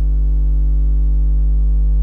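Steady electrical mains hum: one low tone with a ladder of overtones above it, unchanging, with nothing else over it.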